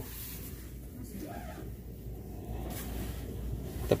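Quiet indoor room tone: a steady low hum under a faint, even background noise, with a brief faint murmur about a second and a half in.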